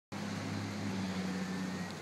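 Steady low hum of a car's engine running, over a light, even wash of street noise.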